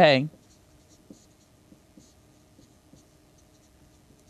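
Marker writing on a whiteboard: faint, intermittent scratching of the tip as a word is written.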